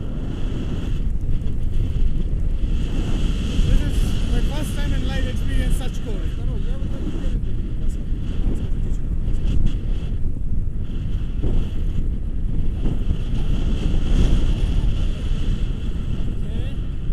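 Wind rushing over an action camera's microphone in paraglider flight: a steady, heavy rumble of airflow with no break.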